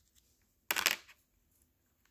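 A single brief rustle of handling, lasting under half a second, about two-thirds of a second in.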